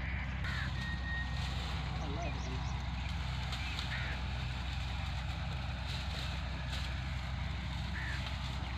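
Tractor diesel engine idling steadily, with a few faint short chirps over it.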